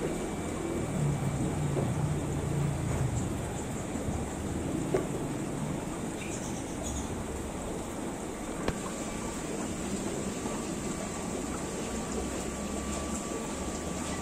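Steady background hum and hiss of shop ambience, with two faint clicks, one about five seconds in and one about nine seconds in.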